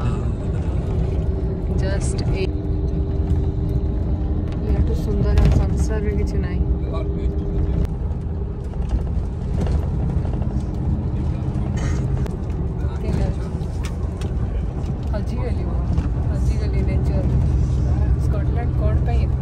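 Steady low rumble of a moving passenger vehicle heard from inside the cabin, with a steady two-note hum over it through the first half that comes back near the end.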